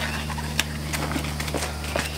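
Footsteps on a concrete garage floor and the handling of work gloves: a few light, irregular taps and scuffs over a steady low hum.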